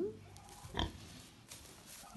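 A Tamworth sow giving one short grunt a little under a second in.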